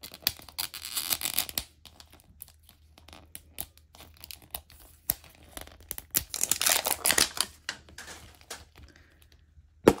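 Sticker seal being peeled off a plastic toy capsule ball: crackly tearing and crinkling in bursts. Near the end comes one very loud pop as the two plastic halves snap apart.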